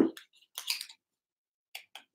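Light handling noises of a small packaged item: a soft bump at the start, a brief rustle of paper about half a second in, and two faint clicks near the end.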